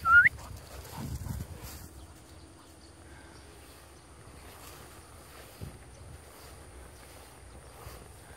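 Faint open-air ambience with light wind on the microphone. It opens with a short rising whistle-like chirp, and a brief low rumble follows about a second in.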